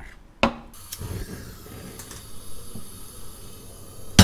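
A stainless steel pot of potatoes and water being handled on a gas hob. There is a sharp click about half a second in, then light scraping and small knocks of the metal pot against the burner grate.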